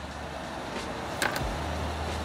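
Low, steady rumble of motor traffic, with one brief, sharp sound a little past a second in.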